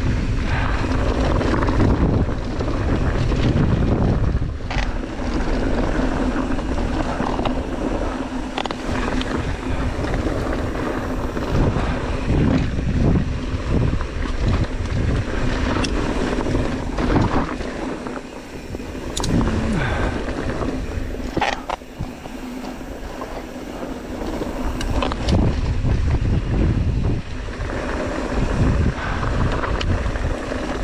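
Mountain bike running down a loose, rocky dirt trail: steady wind noise on the camera's microphone over the crunch of tyres on gravel, with scattered sharp clicks and knocks from the bike over bumps.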